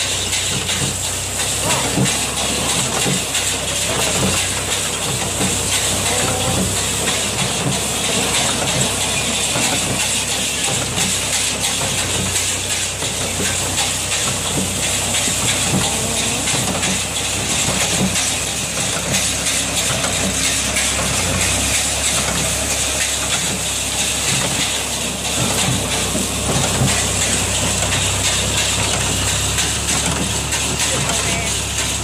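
Massey Ferguson 20 square baler running behind a New Holland T55 tractor, its pickup gathering and baling rice straw: a loud, steady mechanical din with a continuous hiss over the tractor engine's low, even hum.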